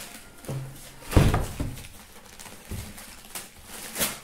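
Aluminized steel exhaust pipe sections knocking against each other and the cardboard box as they are lifted and shifted. There is one heavy thump about a second in and several lighter knocks after it.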